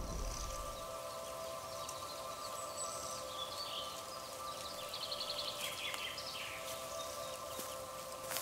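Birds chirping in a forest, scattered calls with a short rapid trill about halfway through, over a steady drone of held musical notes.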